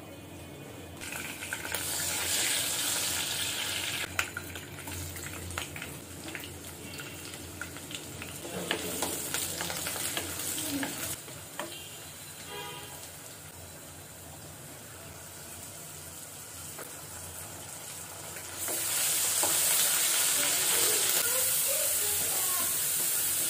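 Sliced onions and green chillies sizzling in hot oil in a non-stick wok, starting about a second in when they hit the oil, and stirred with a wooden spatula that knocks against the pan now and then. Near the end the sizzle gets louder as a wet ingredient goes into the pan.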